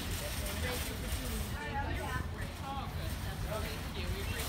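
Indistinct voices of people talking, not close to the microphone, over a steady low outdoor rumble.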